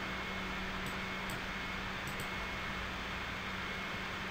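Steady background hiss with a faint low hum, the recording's room and microphone noise, with a few faint clicks about a second and two seconds in.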